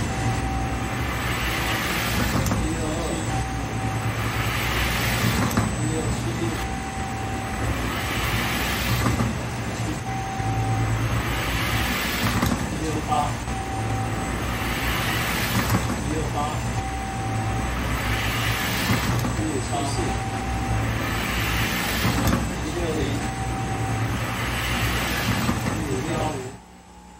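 Small electric motors spinning Magnus rotors at 3300 rpm, a steady low hum. A rushing swell repeats about every one and a half to two seconds, and a short high tone comes and goes.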